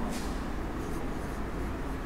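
Felt-tip marker writing on a whiteboard: faint scratches and squeaks of the tip against the board as letters are written, over a steady low room hum.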